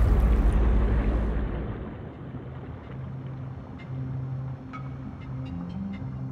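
Scuba diver's backward entry into the sea: a loud rush of water and bubbles that fades away over about the first two seconds. It gives way to quieter underwater ambience with a few faint ticks.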